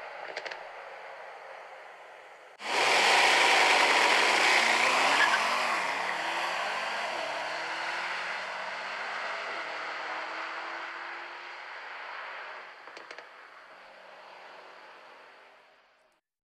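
Car driving sound in a promotional animation. A loud rush starts suddenly about two and a half seconds in, with slowly rising tones underneath, then fades away gradually.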